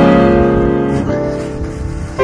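Background piano music: slow chords, one struck at the start and another about a second in, each ringing on and fading.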